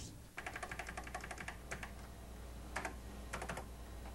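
Typing on a computer keyboard: a quick run of keystrokes for about two seconds, then a few shorter bursts, over a steady low hum.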